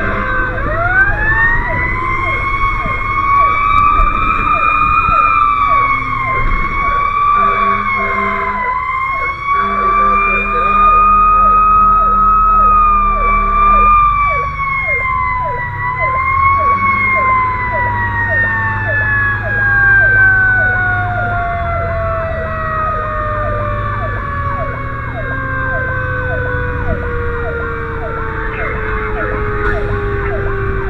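Fire engine's mechanical siren heard from inside the cab. It winds up just after the start, wavers up and down, then spins down in a long, slow falling wail through the second half. Steady air-horn blasts sound in the middle, over the low rumble of the truck.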